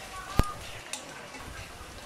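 A single sharp click about half a second in, from a utensil knocking against the wire-mesh strainer as fried chicken is set into it, over a low background hiss.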